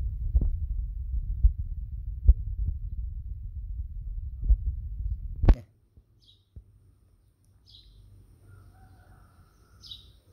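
A low rumble with scattered dull thumps for about five and a half seconds, cut off by a sharp click; then much quieter, with a few faint high chirps.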